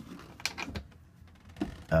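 Two light clicks about half a second in, then faint handling noise, as a hand moves the red rubber boot on a boat battery's positive terminal.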